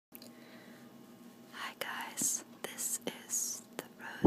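Soft whispered speech close to the microphone, starting about one and a half seconds in, with small clicks between the words over a faint steady hum.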